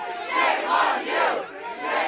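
A crowd of protesters shouting together, many voices overlapping in repeated swells.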